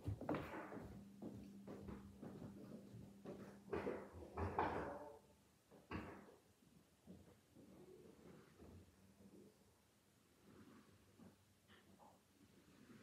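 A room door being handled just at the start as someone leaves, then faint, farther-off knocks and thumps, the loudest about four to five seconds in and a sharp one about six seconds in.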